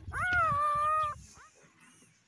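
Newborn Kangal puppy crying: one long high, cat-like whine that rises and then holds steady for about a second, followed by a short cry, then quiet.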